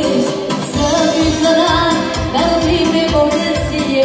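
Live Romanian etno (folk-pop) dance music through a PA: a woman singing with keyboard accompaniment over a steady, fast dance beat.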